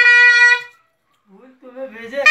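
Shehnai holding a long, reedy note that cuts off under a second in, followed by a breath pause. Faint low sounds come in near the end as the next phrase begins.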